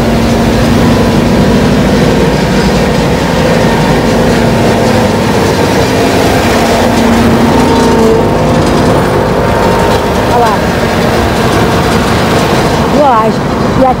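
Large truck's engine idling with a steady drone, weaker in the second half. A woman's voice begins near the end.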